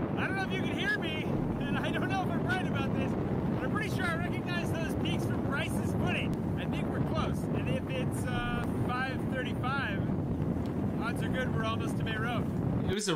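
Fast ferry underway: steady engine and hull rumble with wind on the microphone, and indistinct voices of people on deck.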